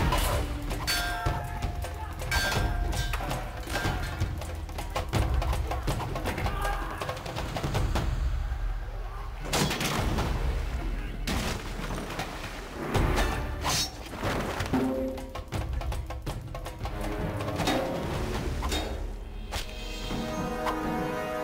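Film fight soundtrack: a dense run of sharp hits and blade blows, with water splashing underfoot, over a music score.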